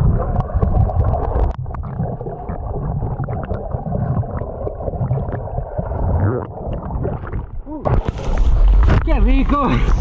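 Muffled underwater sound picked up by a submerged action camera: bubbling and moving water, dull with the treble cut off. About eight seconds in, the camera breaks the surface and the sound opens up into splashing water and a rumble, and a man's voice exclaims near the end.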